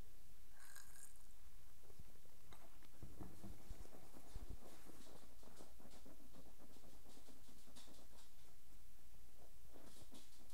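A man sipping beer from a stemmed glass and setting the glass down on a wooden table with a couple of soft knocks a few seconds in, then faint mouth clicks as he tastes it, over quiet room tone.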